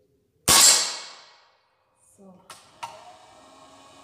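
An air rifle fired once: a single sharp report about half a second in that rings away over about a second. Two light clicks follow a couple of seconds later.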